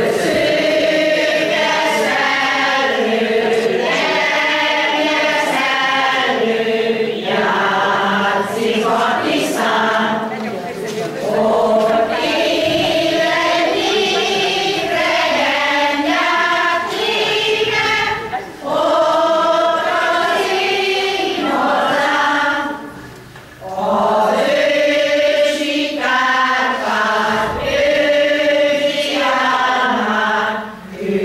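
A Hungarian folk-song choir of mostly older women singing together in long phrases, with short breaks between lines.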